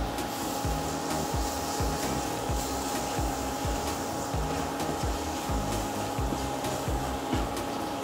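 Steady hum of an induction cooktop's cooling fan with a constant thin whine, while a spatula stirs shallots and chili masala in a non-stick pan.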